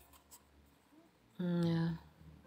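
A woman's voice holding one short vocal sound on a steady pitch for about half a second near the end. Before it there is a second or so of faint rustling and light taps from a deck of cards being shuffled in the hands.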